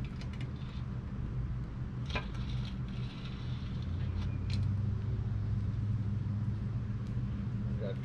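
Low, steady engine-like rumble that swells from about halfway through, with two short metallic clinks from a cast iron Dutch oven and its wire bail handle as the pot is turned a third of a turn on its charcoal.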